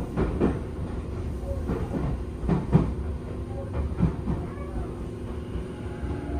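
Running noise inside a Tobu 10000-series-family commuter train: a steady low rumble with the wheels knocking over rail joints, a few clacks around half a second, two and a half to three seconds, and four seconds in.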